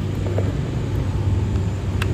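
A motor running steadily, a low even hum like an idling engine, with no change through the moment.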